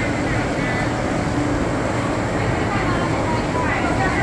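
Busy indoor fish market ambience: shoppers and stallholders chattering over a steady low hum that does not let up.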